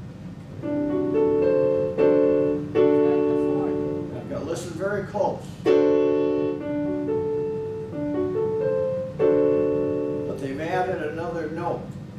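Yamaha EZ220 electronic keyboard in a piano voice, playing a run of struck chords of several notes each, every chord held and fading before the next one comes in. A voice sounds softly under the chords near the middle and again near the end.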